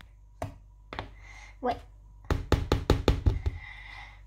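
A mixing utensil knocking against a plastic mixing bowl while flour is stirred into batter: two single knocks early on, then about ten quick knocks in just over a second.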